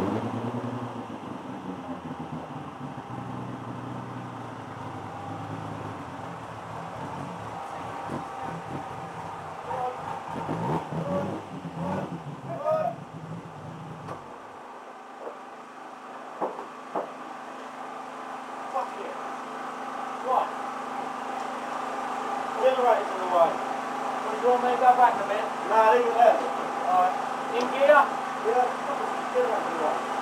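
Race car engine idling, its revs sinking at first, then cut off abruptly about halfway through. A steady hum stays, with many voices chattering, growing louder toward the end.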